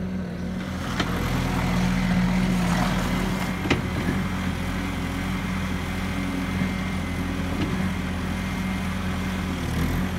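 Bobcat S650 skid-steer loader's diesel engine running steadily as the machine drives and turns on gravel, swelling a little about two seconds in. Two sharp clanks come about one and four seconds in.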